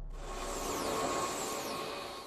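Logo-intro sound effect: a hissing swell with a steady tone under it and faint falling high sweeps, fading away near the end.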